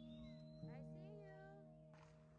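Quiet background music with held notes, fading down. A short high wavering call sounds over it about halfway through.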